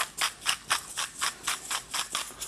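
Handheld twist grinder mill being turned to grind seasoning, a steady ratcheting crackle of about five grinding clicks a second.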